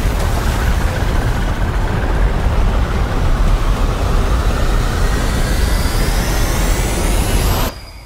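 Trailer sound design: a loud, dense low rumble with a rising whine building over the last few seconds, cutting off abruptly just before the end.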